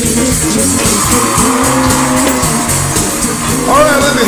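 Live band music playing with a steady beat, and a pitch that sweeps up and back down near the end.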